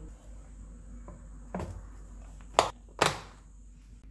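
Plastic food container with a snap-on lid being handled: a soft knock about a second and a half in, then two sharp clicks a little under half a second apart.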